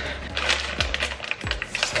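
Plastic candy packet crinkling and crackling in quick, irregular bursts as hands pull at it to tear it open.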